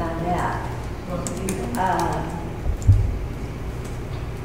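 Indistinct talk in a meeting room with scattered computer keyboard typing clicks, and one low thump about three seconds in.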